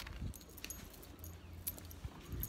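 Scattered light clicks and clinks of close handling, about five in two seconds, over a low rumble: beaded bracelets and a card box knocking as objects on the table are moved.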